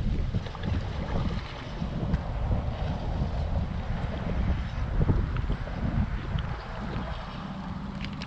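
Wind rumbling on the microphone while a hooked white bass splashes at the surface as it is reeled toward the bank.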